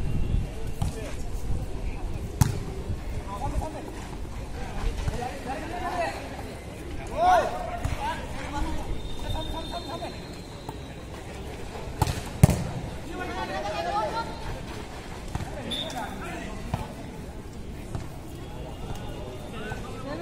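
A volleyball being struck, with a few sharp smacks of hands on the ball during a rally, the loudest a pair about twelve seconds in. Players and spectators call out and shout between the hits.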